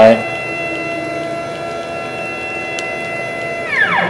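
The stepper motors of a CNC Shark router whine as the gantry is jogged at high speed along the X axis. The whine holds a steady pitch, made of several tones at once, then winds down with a falling pitch near the end as the head decelerates to a stop.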